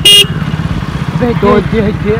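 A vehicle horn blaring, cutting off a quarter second in, over an engine idling with a steady low putter.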